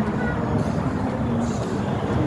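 Steady street traffic rumble of passing vehicles, with faint voices of people around.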